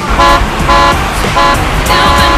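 Car horn honking: four short, steady blasts about half a second apart.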